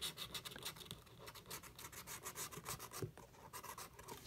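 Scratch-off lottery ticket being scratched with a small tool: a faint run of quick rasping strokes, several a second, as the coating comes off the number spots.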